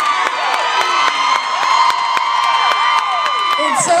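A woman's held high note, a sung scream on one steady pitch for about three and a half seconds that drops away near the end, over a crowd cheering and whooping.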